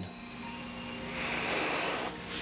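Steady background hiss and low hum of the recording, with a soft swell of hiss near the end and no distinct knock or click.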